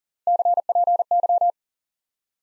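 Morse code sent at 40 words per minute as a steady sine tone of about 700 Hz, keyed in three quick letter groups of four elements each: the abbreviation CPY (copy).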